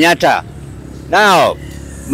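A man's voice speaking in short bursts, with pauses in which a low rumble of street traffic is heard.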